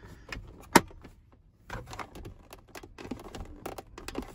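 Hard plastic clicks and rattles as a replacement truck centre console lid is worked onto its hinge, with one sharp snap a little under a second in, then a run of lighter, irregular clicks.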